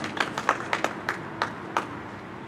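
Scattered applause from a small audience: separate handclaps at an uneven pace, thinning out near the end.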